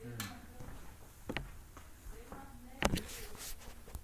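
Low, indistinct voices in a small room, with clicks and handling noise from the recording phone being picked up and moved. The loudest moment is a knock about three quarters of the way through.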